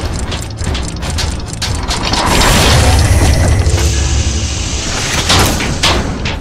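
Sound-effect gear mechanism: ratcheting clicks and clanks of turning metal gears, about three a second. About two seconds in, a louder sustained mechanical rush with a deep rumble swells up, and two sharp clanks land near the end.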